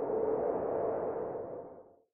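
Transition sound effect: a steady droning tone over a rushing noise that swells in, holds and fades away near the end.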